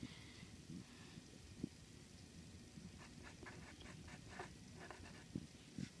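Faint scratching of a pen tip writing on textured paper washi tape, in short scattered strokes.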